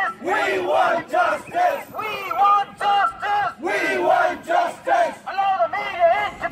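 Crowd of protesters chanting slogans in unison, led by a man shouting through a megaphone. The chant is loud and steadily rhythmic, about two to three shouted syllables a second.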